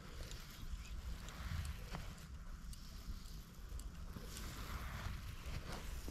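Faint low rumble of wind on the microphone over quiet outdoor ambience, with a few faint ticks.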